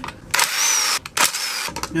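Cordless drill-driver spinning out 10 mm valve-body bolts on an automatic transmission: two short runs of about half a second each, the motor's whine falling slightly as each run ends.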